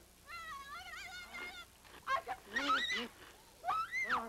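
A woman's high-pitched, wavering cries and moans from offscreen: a long warbling cry, then shorter moans, ending in a cry that rises and falls.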